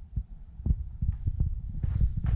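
Footsteps on a cellar's earth and rubble floor, heard as an irregular run of dull low thumps.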